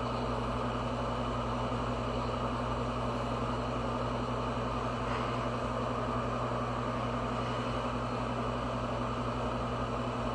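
A steady low mechanical hum with a constant drone, and a faint tap about five seconds in.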